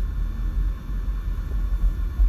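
Low, steady rumble of a car, heard from inside its cabin.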